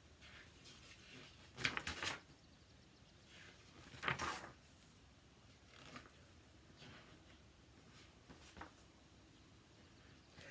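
Faint rustling of a book's paper pages being turned, in a few short bursts, the two clearest about two and four seconds in.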